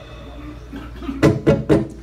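Low steady room hum, then a few short bursts of a person's voice in the second half.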